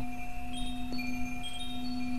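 Chimes ringing, with scattered short high notes over a steady low drone.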